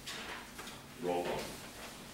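Low, indistinct talk in a meeting room: a short spoken sound about a second in, after a brief knock at the start.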